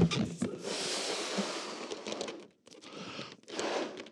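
A man blowing hard into a rubber balloon to inflate it close to bursting: one long forceful blow lasting about two seconds, then a pause and shorter breaths.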